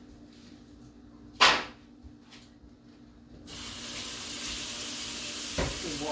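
A single sharp knock about a second and a half in, then a kitchen sink tap is turned on about halfway through and water runs steadily into the sink.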